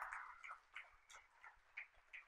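Faint audience applause tailing off after a talk: a brief patch of clapping at the start thins out to a few scattered, irregular claps.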